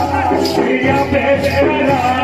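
Rajasthani folk singing for a Gindar stick dance, over a steady percussive beat of about two strokes a second.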